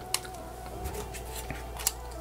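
Two small sharp clicks as a headset's small plastic battery pack and its wires are handled by hand, over a faint steady hum.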